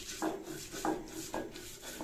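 Stone roller grinding back and forth on a pitted stone grinding slab (Bengali shil-nora), crushing shrimp and lentils into paste. It is a rhythmic scraping, about two strokes a second.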